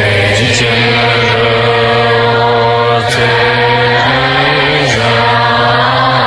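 Tibetan Buddhist supplication prayer being chanted in a slow, drawn-out melody over a steady low drone, each syllable held long.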